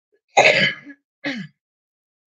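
A woman coughing and clearing her throat into her fist: one loud burst about half a second in, then a shorter second one.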